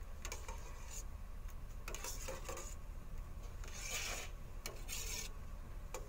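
Metal spoon scraping against the inside of a stainless-steel pot while stirring liquid, a series of short rasping strokes about once a second.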